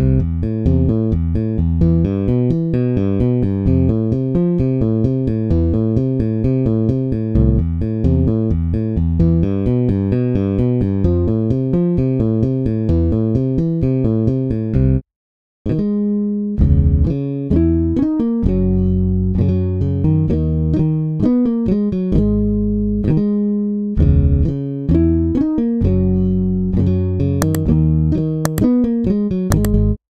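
Ample Bass P Lite II, a sampled software bass guitar modelled on a Fender bass, playing MIDI loops. First comes a fast, busy riff of short repeated notes, then, after a brief break about fifteen seconds in, a slower bass line of longer held notes.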